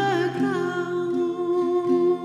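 A woman's singing voice holds the last note of a chorus line, its vibrato settling into a steady tone that thins away, over a gently plucked acoustic guitar accompaniment.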